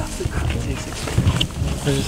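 A man talking in short bursts over a low rumble.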